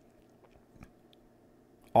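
Near quiet with a few faint, short clicks and rustles of trading cards being handled.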